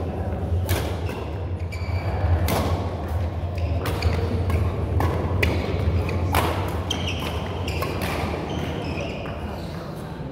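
Badminton rackets striking a shuttlecock during a fast doubles rally, a string of sharp, irregularly spaced hits with players' footsteps on the sports hall floor, ringing slightly in the large hall.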